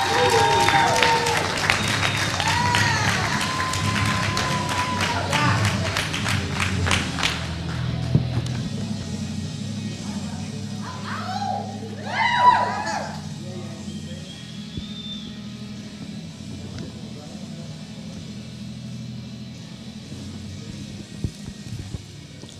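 Audience clapping and cheering for the first several seconds, then dying down, with music playing underneath. A voice calls out briefly about halfway through.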